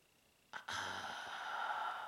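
A man's long voiced sigh, starting about half a second in and held steady for nearly two seconds.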